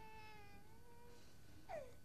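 An infant crying faintly: one long wail that slowly falls in pitch, then a brief swooping cry near the end.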